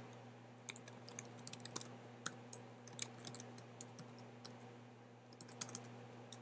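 Computer keyboard typing: faint, irregular key clicks, thinning out for a moment around four to five seconds in, over a steady low hum.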